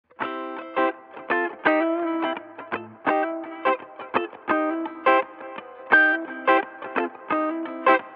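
Intro music: a melody of plucked notes, about two a second, with no drums.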